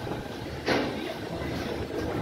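LHB passenger coaches rolling past with a steady low rumble, and one sudden loud clack a little under a second in.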